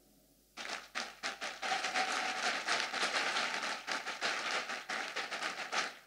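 Applause: a group of people clapping, starting about half a second in, filling in quickly and dying away just before the end.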